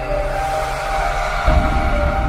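Intro music: held synth notes stepping in pitch over a whooshing hiss, with a deep boom about one and a half seconds in.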